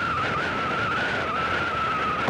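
A steady high whine that wavers slightly in pitch, over quieter road and wind noise from a vehicle moving along a paved road.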